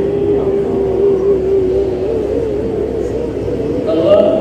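A man's voice drawing out one long chanted note of an Arabic supplication, held on one pitch and then wavering up and down in the last second or so.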